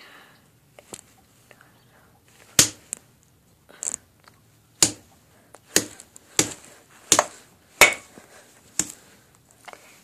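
Brass knuckles striking a bar of soap on a tile floor: a series of about eight sharp knocks, irregularly spaced roughly a second apart, as the soap breaks into pieces.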